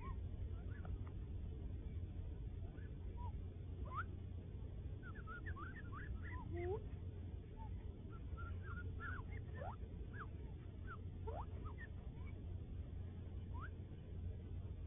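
Gambel's quail chicks peeping: many short, thin, mostly rising peeps scattered through, busiest in the middle, over a steady low rumble.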